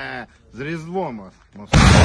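A Grad multiple rocket launcher fires: a brief voice, then the sudden, very loud roar of a rocket launch breaks in near the end and carries on.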